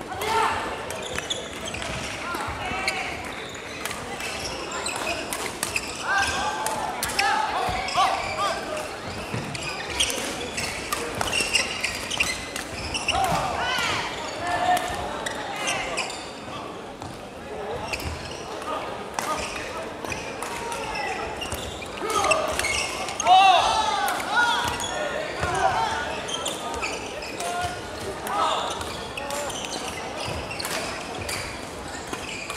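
Badminton play in a large sports hall: sharp, irregular clicks of rackets striking shuttlecocks across several courts, under steady background chatter of voices.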